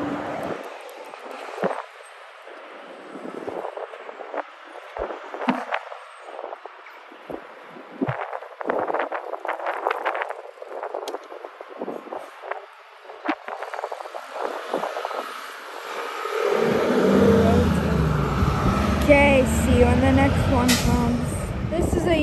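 Wind buffeting the microphone in gusty crackles over faint airport noise. About two-thirds of the way in, a much louder, steady low rumble of jet airliner engines sets in.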